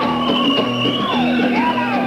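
Live band music led by guitar, with a high melodic line that slides and bends up and down in pitch over a steady low note.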